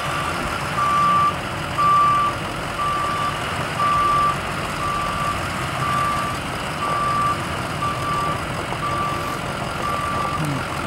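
An ambulance's backup alarm beeping while it reverses, about one half-second beep each second, over its engine running underneath.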